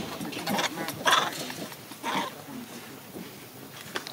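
Macaque monkeys calling: three short, high calls about half a second, a second and two seconds in, the one at about a second the loudest.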